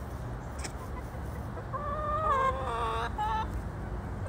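A backyard hen calling: one drawn-out, wavering note starting a little under two seconds in, then two or three short clipped notes.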